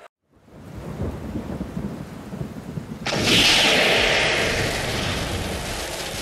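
Thunderstorm sound effect: a low rumble builds, then a loud thunderclap about three seconds in that slowly dies away.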